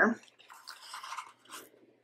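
Soft, scratchy rubbing of a paper sticker against a planner page as it is layered on, lasting about a second and a half.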